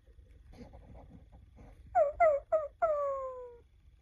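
B. Toys Woofer toy guitar's speaker playing a recorded dog: three short yips, then one longer howl sliding down in pitch. This is the howl-at-the-moon the toy gives when it times out and shuts itself off. Faint rustling comes before it.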